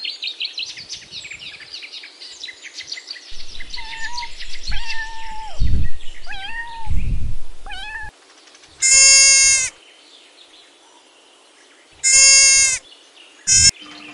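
Rapid chattering bird calls, then a few pitched calls with two low thumps. After that a domestic cat meows three times: two long, steady meows and a short one near the end.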